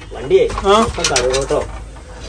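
A man's voice in short phrases, its pitch rising and falling.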